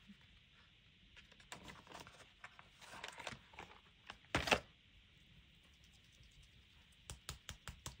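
Faint, scattered plastic clicks and taps of acrylic paint markers being handled, with a sharper click about four and a half seconds in and a quick run of clicks near the end.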